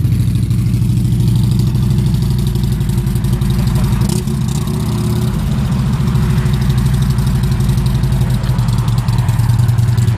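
2012 Harley-Davidson CVO Ultra Classic's 110 cubic-inch V-twin running at low revs as the bike pulls away slowly, with a steady pulsing exhaust note.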